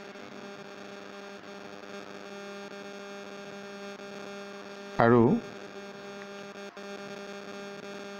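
Steady electrical hum with a buzzy stack of overtones, running unchanged under the recording. A single short spoken syllable breaks in about five seconds in.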